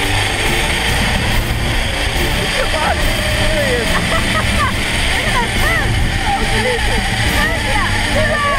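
Zip-line trolley running along a steel cable, a loud steady rolling whirr mixed with wind rushing past the microphone, with short voice-like calls over it.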